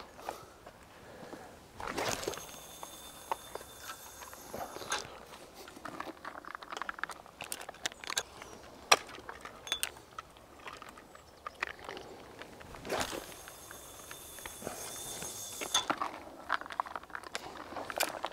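Two long casts with a big spinning reel, about two seconds in and again about thirteen seconds in. Each starts with a sharp swish, then line hisses off the spool with a high whistle for about three seconds as a Spomb bait rocket is sent out about 70 metres to feed the swim. Small clicks from handling the reel and rod fall in between.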